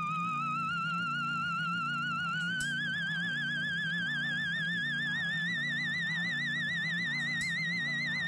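Electronic soundtrack: a wavering, vibrato-laden tone that slowly rises in pitch over a repeating low looped pattern, with two faint clicks.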